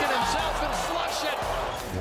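Arena crowd noise, with a basketball being dribbled on a hardwood court.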